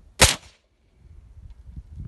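A single shot from an AK-pattern carbine: one sharp, loud crack about a quarter second in, ringing out within a few tenths of a second.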